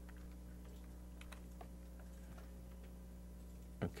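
Faint, scattered computer-keyboard key clicks over a steady low electrical hum in a quiet room.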